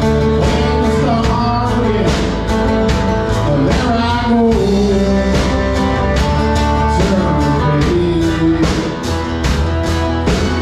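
A live rock band playing an instrumental break: steady drums and bass guitar under guitar chords, with a lead melody line that bends and glides in pitch.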